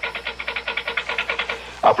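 Rotary telephone dial spinning back, a rapid, even run of clicks lasting under two seconds, as a call to the operator is dialled.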